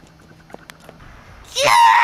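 A person screaming: a loud, high-pitched scream that rises and falls in pitch, starting about one and a half seconds in, after a quiet stretch with a few faint clicks.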